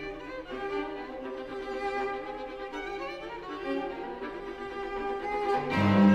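String trio of violin, viola and cello playing a soft passage of sustained and moving notes. Near the end the cello comes in loudly on low held notes and the music swells.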